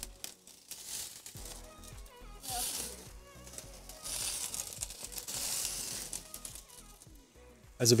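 Beef burger patties sizzling on a charcoal grill grate, a quiet fat-spitting hiss that swells and fades, loudest in the middle.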